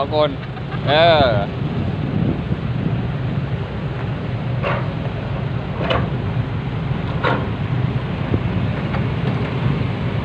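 Heavy diesel machinery, an Isuzu dump truck and an excavator, running with a steady low rumble. A few faint short sounds come through in the middle.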